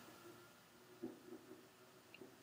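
Faint steady hum of an Azure watt ECM refrigeration motor spinning at its newly programmed 2000 RPM, with a faint tap about a second in.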